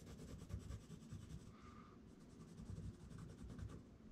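Faint, irregular scratching of a pen tracing the outline of an upholstery pattern piece on a board.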